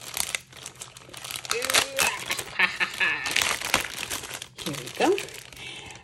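A plastic mailer bag crinkling and rustling as it is opened by hand and a cellophane-wrapped pack is pulled out of it.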